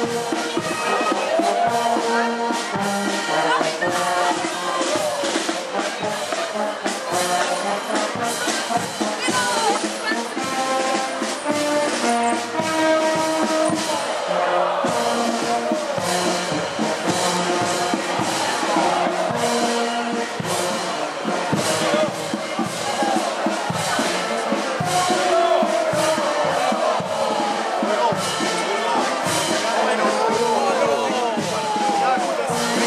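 Brass band music with a steady beat, with people's voices talking over it.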